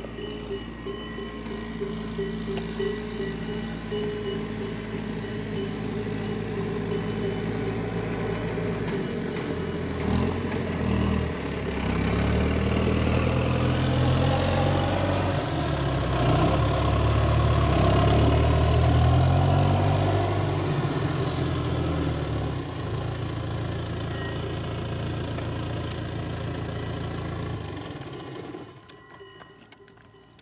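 A motor vehicle's engine running, growing louder to a peak about two-thirds of the way through, then fading away near the end.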